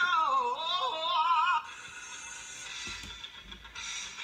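A high, wavering sung voice with strong vibrato playing from a video on laptop speakers, breaking off suddenly about a second and a half in. A quieter, hissy stretch of the clip's soundtrack follows.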